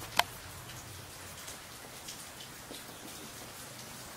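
A sharp click just after the start, then a steady faint hiss with scattered light ticks.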